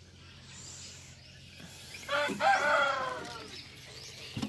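A rooster crowing once, a single long call of about a second and a half that starts about two seconds in and tails off.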